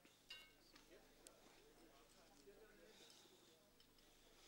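Near silence: a few faint metallic clinks, one briefly ringing, from spanners and parts being handled on a tractor engine, over faint murmuring voices.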